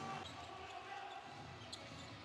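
Basketball dribbled on a hardwood court, faint under low arena background noise.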